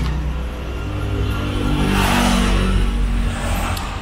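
A motor vehicle's engine passing close by, rising in pitch as it revs up, loudest about two seconds in and then fading, over a steady low rumble.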